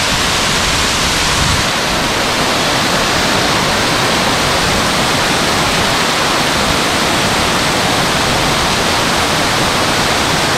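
Waterfall: water sheeting down a tall, steep rock face into a shallow rocky pool, a steady, loud rush of falling water.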